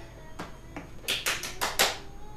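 Hand weights being handled: a couple of separate light taps, then a quick run of about five sharp taps and knocks in the second half.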